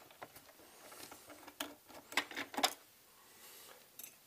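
A few scattered light clicks and taps from a screwdriver and hands working on a robot vacuum's plastic casing, the loudest a little after two and a half seconds.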